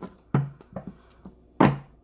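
Tarot deck being shuffled by hand: two sharp knocks about a second and a quarter apart, with faint card clicks between them.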